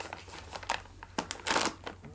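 Plastic snack pouch crinkling as it is handled and torn open, with a louder ripping tear about one and a half seconds in.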